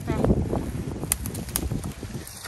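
Hands rummaging through low lingonberry shrubs and plucking berries, an uneven rustle with a few light clicks about a second in, over a low rumble of wind or handling noise on the microphone.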